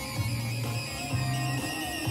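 Electro track in its breakdown playing through a DJ mixer: a low bass line in short held notes, with the mixer's noise effect laid over it as a steady hiss.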